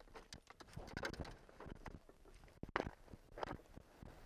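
Irregular knocks and rattles of a landing net holding a small, just-landed pike being handled against the bottom of a small boat, with the loudest knock a little before three seconds in.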